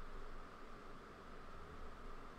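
Faint steady hiss with a low hum: the microphone's noise floor, room tone with no distinct events.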